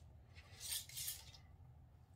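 Screw lid being twisted off a glass jar: a brief, faint rasping of the lid's threads, in two short strokes about a second in.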